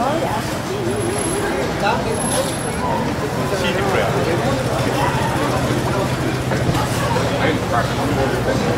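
Busy outdoor street ambience: a crowd's scattered voices and chatter over road traffic, with a low, steady vehicle engine hum setting in about halfway through.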